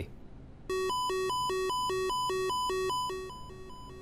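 Space Shuttle Columbia's master alarm: an electronic tone switching rapidly back and forth between a low and a high pitch, starting about a second in and fading away near the end. It was set off by the failure of one of the four flight-control channels, whose elevon position sensors on the damaged left wing had failed.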